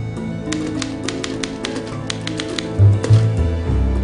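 Typewriter keys clacking in a quick run of about a dozen strikes, over film-score music with low sustained notes.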